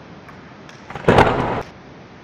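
A sudden loud boom, like an editing transition effect, a little past a second in, lasting about half a second over a faint steady background.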